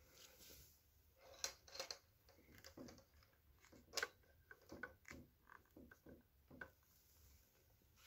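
Faint, scattered clicks and taps of plastic IV tubing being pressed into the line guide of an infusion pump, the loudest about four seconds in, against near silence.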